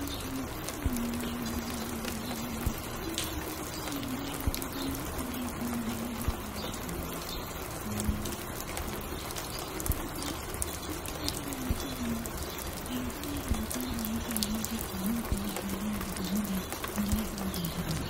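Layered ambient mix: steady rain hiss with scattered small clicks and crackles, under a faint, muffled low melody that steps from note to note.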